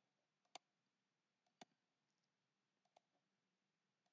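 Three faint computer mouse button clicks about a second apart, each a sharp click with a softer tick just before it.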